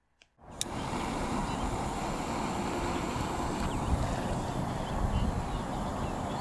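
Steady hiss with low wind rumble on the microphone while a jet torch lighter lights the igniter fuses in two pots of thermite, with one sharp click about half a second in.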